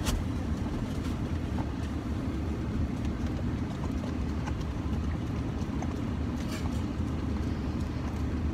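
Steady low rumble of a car running, heard inside the cabin, with a sharp click at the start and a few faint smacks as dogs lick from a small cup.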